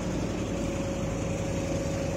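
A steady mechanical hum with a thin held tone, over the rush of fast-flowing river floodwater.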